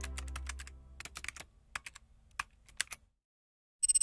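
Keyboard-typing sound effect: a run of irregular key clicks over about three seconds, over the fading end of a deep low note. A short buzzing burst comes right at the end.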